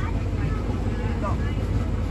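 Steady low rumble of an open-air park train running along, heard from inside one of its passenger cars, with faint voices of other riders.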